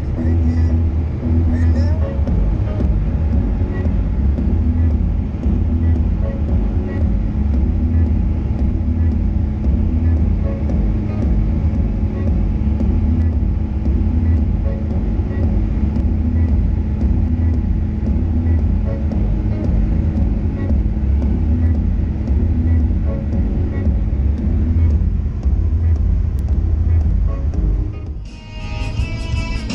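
Steady low engine and tyre drone inside a car's cabin at motorway speed.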